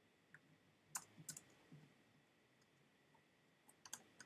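Faint computer-keyboard typing: a few keystrokes around a second in, a pause, then a quick run of keystrokes near the end.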